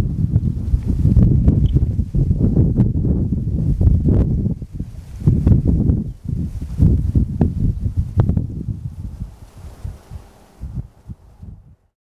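Wind buffeting the microphone in irregular gusts, a loud low rumble, with grass rustling in it. It dies away over the last couple of seconds.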